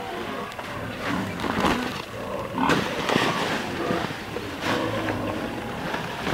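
Dry rice hulls rustling and hissing as they are poured from a sack and spread by hand into bamboo nest boxes, with scattered crackles and a fuller pour about halfway through.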